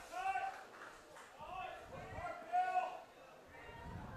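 Raised voices of people at a ballfield calling out, several drawn-out shouts one after another.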